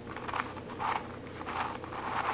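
Plastic pieces of a six-layer Royal Pyraminx twisty puzzle clicking and scraping as its layers are turned by hand, in several short rasps.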